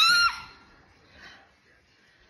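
A baby's short, high-pitched squeal of delight right at the start, followed by quiet room sound.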